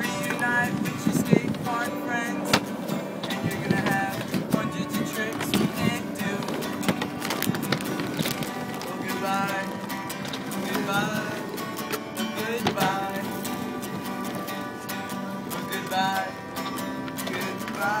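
Acoustic guitar strummed steadily, with a man's voice singing a slow, wavering melody over it.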